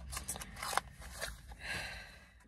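Painkiller tablets being pressed out of a foil blister pack: a series of small sharp clicks and crackles, with a short rustle near the end.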